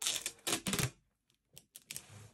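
Packing tape pulled off its roll by hand in one loud noisy stretch lasting about a second. A few short crackles follow near the end as the tape is pressed onto the cardboard box.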